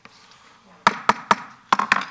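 The microphone feed cuts in abruptly on a low room hum. About a second in comes a quick, irregular series of about six sharp taps and knocks close to a desk microphone.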